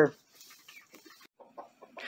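Young chickens clucking softly and faintly, in short scattered notes with light clicks between them.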